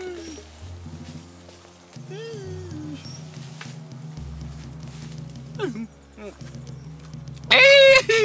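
Film soundtrack: low sustained music notes change pitch every second or two, under a few short cries that rise and fall in pitch. A loud, high cry starts about half a second before the end.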